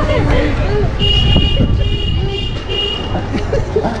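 A vehicle horn tooting about four times in quick succession, starting about a second in, a high-pitched beep over street traffic rumble and voices.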